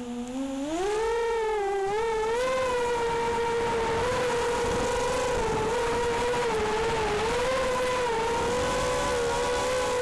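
Armattan F1-4B racing quadcopter's Cobra 2204 2300kv brushless motors spinning up for takeoff, the whine rising in pitch over the first second, then holding a steady whine that wavers slightly with throttle in flight.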